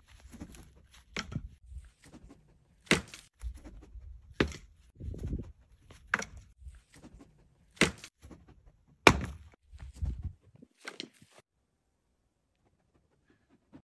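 A series of sharp knocks or clacks, about one every second and a half, with dull low thuds and rumbling between them; they stop about eleven seconds in.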